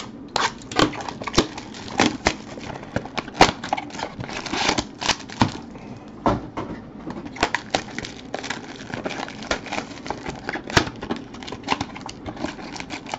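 A cardboard trading-card hobby box being opened and its wrapped card packs handled, with irregular crinkling, crackling and clicks throughout.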